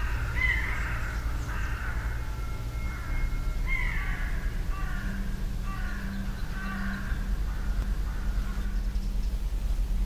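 Crows cawing over and over for several seconds, the calls overlapping, with a steady low hum beneath.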